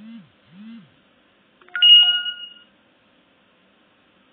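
Smartphone message alert for an incoming M-Pesa confirmation text: two short low buzzes, then a louder steady chime about two seconds in, lasting just under a second.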